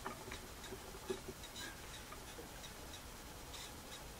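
Quiet room with faint, regular ticking, about three ticks a second, and a few soft knocks near the start and about a second in.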